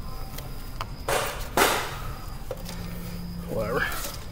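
Hands working on parts under a car's front end: two short bursts of rustling noise around the middle, a few light clicks, and a short vocal sound near the end.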